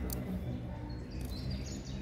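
Small birds chirping in a quick series of high notes in the second half, over a steady low outdoor background noise.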